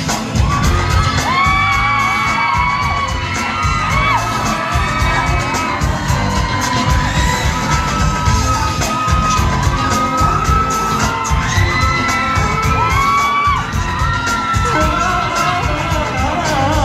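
Loud amplified pop dance track with a heavy, steady beat, playing through a concert PA with little or no lead vocal, while the crowd keeps up high-pitched screams and cheers over it.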